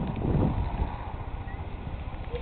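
Wind buffeting the microphone, a low, uneven rumble that swells briefly about half a second in.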